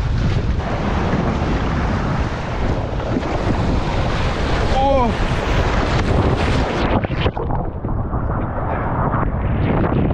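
Wind buffeting the microphone over breaking surf, with water splashing over a kayak as a wave carries it in through the shallows. A few knocks about seven seconds in, after which the sound turns duller.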